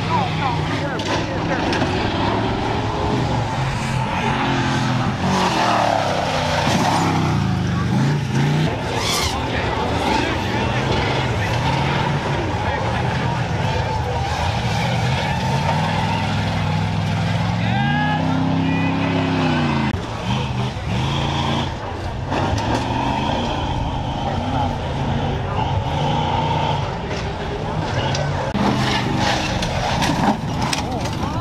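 Off-road race truck engines revving up and dropping off again and again as they run a dirt course, with voices in the background.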